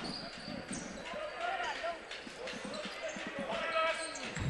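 Basketball game sound in a sports hall: a ball bouncing on the hardwood court under faint voices of players and crowd.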